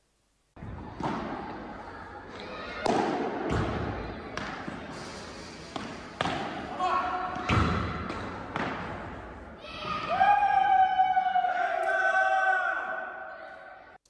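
Padel rally: the ball is struck by the rackets and bounces off the court and walls, a series of sharp hits about one to two seconds apart, each echoing in a large hall. In the last few seconds a steady pitched sound is held for about three seconds.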